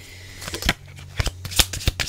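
Tarot cards being handled and shuffled by hand: a string of sharp, irregular clicks and snaps of card on card.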